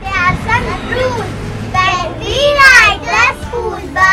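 Young children speaking in short phrases, high-pitched kindergarten voices.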